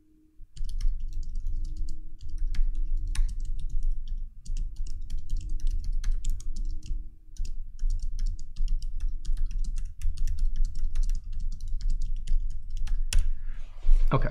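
Rapid typing on a computer keyboard: a steady run of keystrokes with short pauses about half a second in and around four and seven seconds in.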